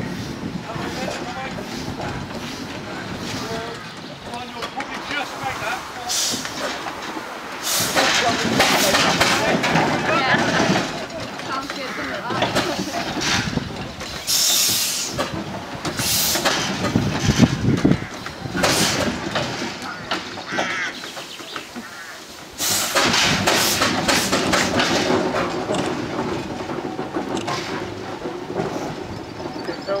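Steam road roller running as it crawls across a small bridge towing a wooden living van, with people's voices around it. The sound gets louder about eight seconds in and again about two-thirds of the way through.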